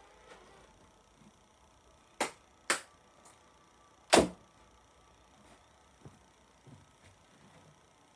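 Three sharp clicks: two about half a second apart, then a louder one about a second and a half later, with a few faint taps after.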